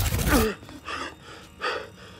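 A sudden loud whoosh as Ant-Man grows back to full size, followed by a man's sharp gasp and two short, heavy breaths.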